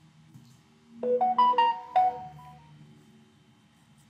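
A short electronic melody: a quick run of about five bright notes starting about a second in and ringing out within two seconds, like a phone ringtone or alert jingle.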